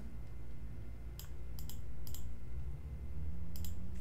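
Computer mouse clicking a handful of times, sharp short clicks, some in quick pairs, over a faint low room hum.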